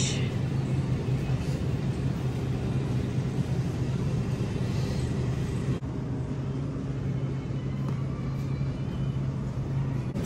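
Plastic shopping cart rolling across a polished store floor, giving a steady low rumble over a constant hum.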